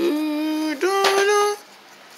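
A person humming two held notes, the second a little higher, each lasting under a second.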